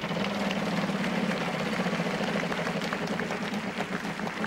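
Wheel of Fortune prize wheel spinning, its flipper pointer clicking rapidly against the pegs, the clicks gradually slowing as the wheel loses speed.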